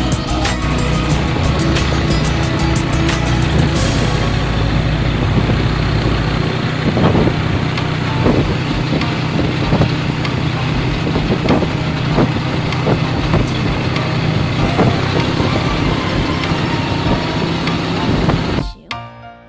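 A motor vehicle running steadily, heard from on board during a ride, with music playing as well.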